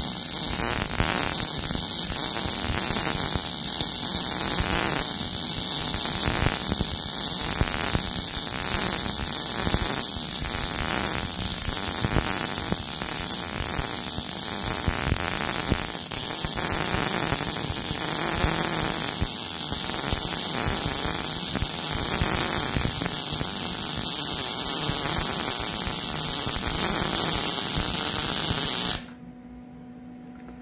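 A wire-feed welder's arc crackles and hisses steadily as a continuous bead is run on steel gussets on a mower deck support. The arc cuts off suddenly about a second before the end.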